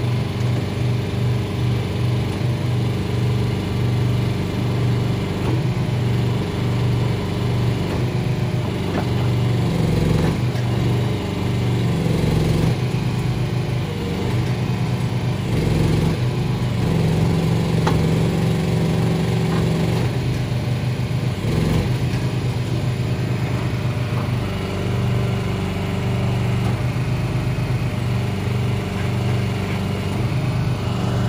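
Small engine on a shed-hauling tilt trailer running its hydraulics, steady throughout, its note shifting now and then under load as the shed is pushed off the tilted bed.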